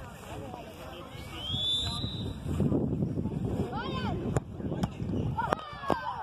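Children's high voices shouting and calling out across a football pitch, over a steady rumble of wind on the microphone. A few sharp knocks come in the second half.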